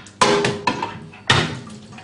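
Stainless-steel wash and rinse arm assembly of a commercial pass-through dishwasher knocking twice against the machine as it is lifted out, each metal clank ringing briefly.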